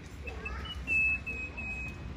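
A thin, high whistling tone in several short stretches at nearly one steady pitch, over a low hum of room noise.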